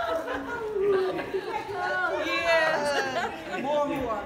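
Several people chattering over one another in a large room, with one voice rising high and excited a little past two seconds in.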